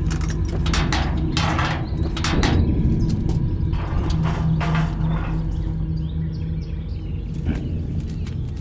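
Truck engine idling steadily, with bursts of clattering and knocking as men climb into the wooden cargo bed.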